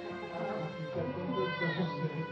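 Background music playing, with a newborn baby's brief fussing cry, a short falling wail about one and a half seconds in.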